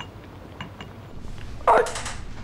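A few light clinks of a wooden spoon stirring in a ceramic slow-cooker pot, then near the end a man's short, loud strained cry.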